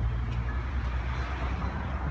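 Street traffic noise: a steady low rumble with an even wash of road noise.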